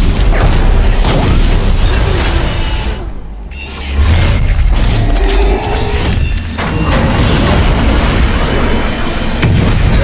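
Animated-film fight sound effects: repeated booms and blasts with a heavy low rumble, over background music. The sound dips briefly about three seconds in, then the booming comes back hard a second later.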